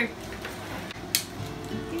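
Plastic wrapping crinkling and peeling as LOL Surprise toy balls are unwrapped by hand, with one sharp crackle just past a second in.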